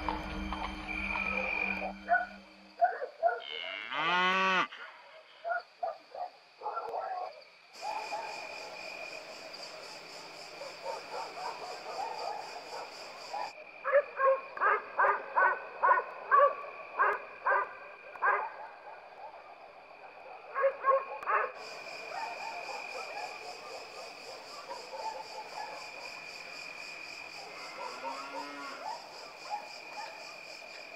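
Rural night ambience: a steady high insect drone, a cow lowing briefly about four seconds in, and a run of about a dozen short animal calls, around two a second, in the middle.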